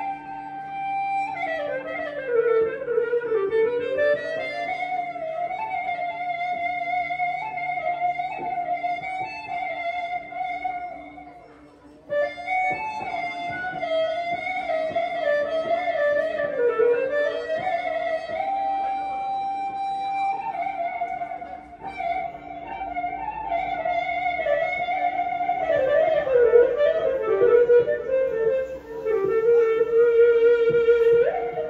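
Amplified electric violin played with a bow: a single melody line of held notes with long downward and upward slides, over a steady low drone. The playing breaks off briefly about twelve seconds in and picks up again.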